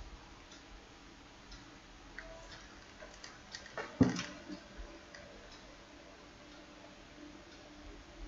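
Computer keyboard keys clicking faintly and irregularly as someone types slowly, a few keystrokes a second. A single louder knock lands about halfway through.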